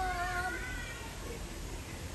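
A person's drawn-out, held voice, like a long sustained 'ooh' or call, lasting about a second at the start with a second, higher voice briefly overlapping it, then fading into the background hum.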